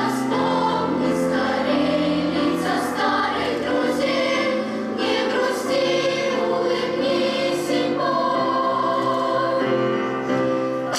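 Large girls' choir singing in several parts, held notes shifting pitch every second or so, with crisp sung consonants.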